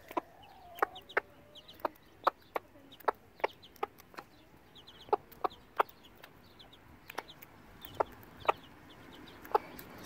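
Silkie hen and week-old chicks foraging close by: short, sharp clicks at an uneven pace, roughly two a second, with faint high chick peeps between them.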